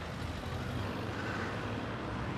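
Street traffic with a lorry's engine running, a steady rumble and road noise.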